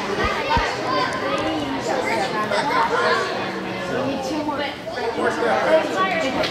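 Many overlapping voices of children and adults talking and calling out at once in a large indoor arena, with a couple of low thumps near the start.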